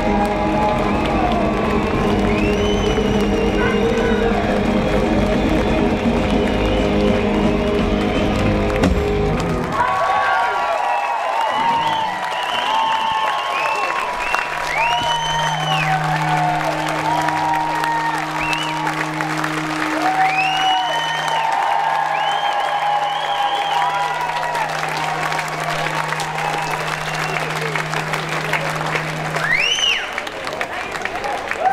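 A live electric-guitar blues song with drums ends abruptly about ten seconds in. An audience then applauds and cheers, with a low steady hum underneath.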